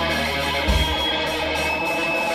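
Live thrash metal band playing loud: distorted electric guitars, bass and drums together, with a heavy low hit about two-thirds of a second in.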